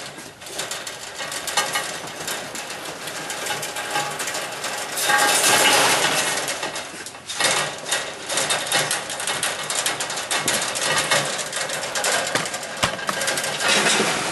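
Rabbits scrambling on a wire-mesh cage floor as a buck goes after a doe for breeding: a run of clicking, rattling and scratching from claws on the wire, with a louder stretch of scuffling in the middle.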